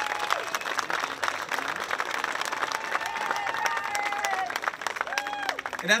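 Audience applauding with dense, steady clapping, giving way to a man's voice at the very end.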